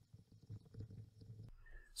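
Near silence: faint room tone with a few soft, scattered taps, typical of a stylus writing on a tablet screen.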